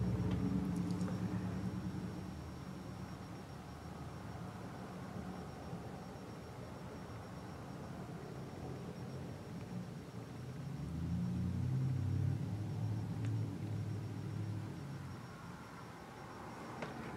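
A low rumble, fading after the first couple of seconds and swelling again for a few seconds in the second half.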